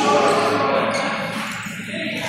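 Futsal play in a large sports hall: players' shouts and calls, with the ball thudding and shoes squeaking on the hall floor.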